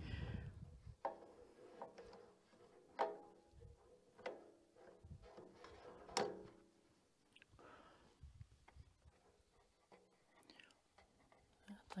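Faint clicks and small knocks of a rubber fuel hose and spring clamp being worked onto a portable generator's fuel valve by hand. There are a handful of sharp clicks a second or two apart, then softer fiddling.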